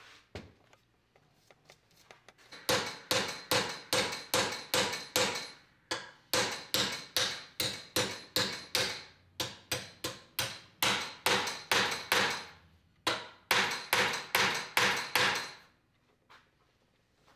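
Hammer blows on the iron fittings of a wooden wagon-gear part held in a vise. The blows come about three a second in four runs with short pauses, each with a metallic ring.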